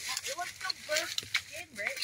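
Quiet background speech in short snatches, with a few faint clicks and rustles.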